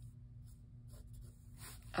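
Faint, intermittent scratching of a pencil drawing on sketchbook paper.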